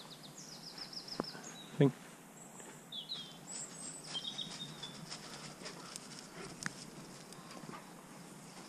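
Small songbirds singing and calling in woodland: quick trilled phrases early on and chirps around the middle, over faint rustling steps in dry leaf litter, with one short, loud thud about two seconds in.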